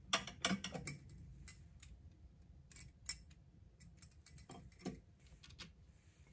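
Light clinks and taps of glassware against a glass shelf as crystal tumblers are picked up and moved: a quick cluster in the first second, then scattered single clicks.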